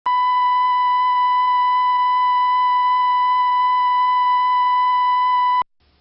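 A steady electronic line-up tone, the reference tone at the head of a broadcast videotape, held at one pitch for about five and a half seconds and then cut off suddenly.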